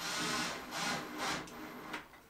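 Cordless drill driving a screw into a wooden floor joist, running in several short bursts.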